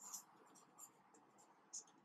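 Faint, short scratchy strokes of a marker pen writing letters on a whiteboard.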